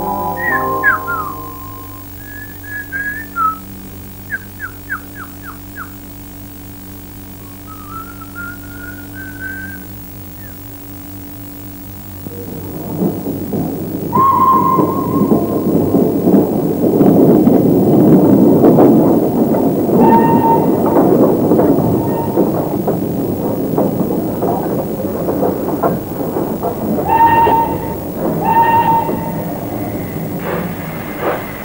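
Background music fades out, giving way to short bird-like chirps and whistled glides. About twelve seconds in, a loud, dense background noise comes up, with short pitched calls breaking through it several times.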